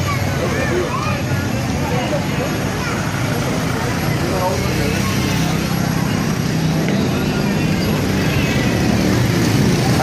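Busy street noise: a crowd of people talking in the background while motorcycles and cars run past, getting slightly louder near the end.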